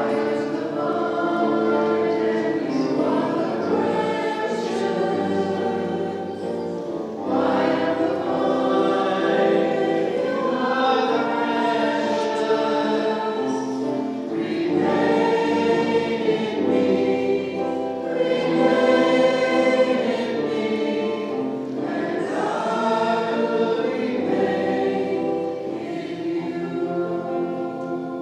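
A choir sings a Maronite liturgical hymn in phrases of a few seconds over steady held notes, fading away near the end.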